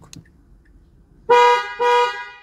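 Mazda CX-7 car horn sounding twice in quick succession, set off by the red panic button on the key fob. The honks show that the newly programmed remote works.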